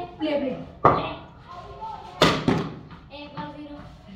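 Two sharp knocks of a tennis ball in play, about a second and a half apart. The second and louder is a cricket bat striking the tennis ball.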